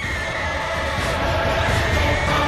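Background music for a stage dance-drama: sustained, stacked held tones over a low rumble, slowly swelling in loudness.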